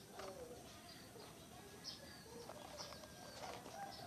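Faint bird chirps in the background: short, high, repeated notes at irregular intervals of about half a second to a second, with a lower sliding call early on.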